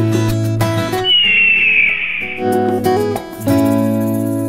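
Background music of strummed acoustic guitar. About a second in, the guitar drops out for roughly a second and a half while a single high whistle-like tone slides slowly downward; then the strumming resumes.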